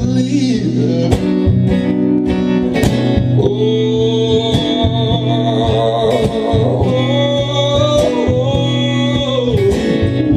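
Live solo performance: a man singing long, slightly wavering held notes over a strummed acoustic guitar.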